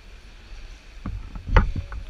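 Low steady rumble of the sea in a cave, then a run of sharp knocks and clatters from about halfway through, the loudest about three quarters of the way in, as paddleboard gear is handled.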